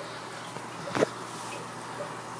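Aquarium bubbler streaming air bubbles through the tank water: a steady bubbling hiss, with one brief tap about a second in.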